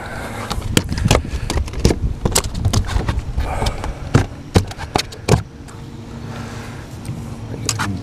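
Irregular sharp knocks, clicks and rattles of rod, reel and hands handling gear close to the microphone while a bass is reeled in, dying away about five seconds in, over a steady low hum.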